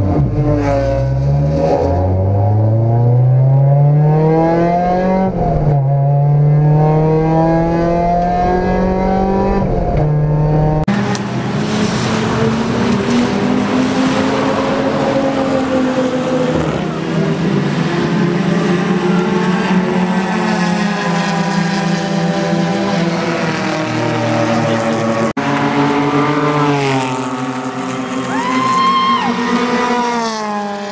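Mazda Miata race car engine heard from inside the cockpit, pitch climbing and dropping again and again as it revs up and shifts through the gears. About eleven seconds in, the sound changes to race car engines heard from trackside as cars pass by, with one more car going past near the end.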